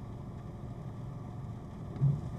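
A Jeep's engine running, heard from inside the cabin as a steady low rumble.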